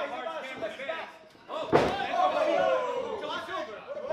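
A wrestler's body hitting the ring mat with one heavy thud a little before halfway, with the crowd shouting and chattering around it. The thud draws a loud, drawn-out falling 'ooh' from the spectators.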